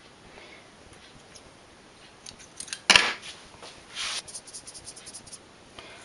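Scissors cut a thin spool thread: one sharp snip about three seconds in, followed by a run of light clicks and rustles as the thread is handled.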